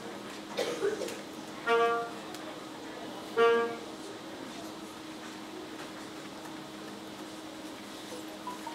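A saxophone sounding three short single notes at the same pitch, a second or two apart, as test notes to check a key that has just been bent back into place, with a brief knock between the first two notes.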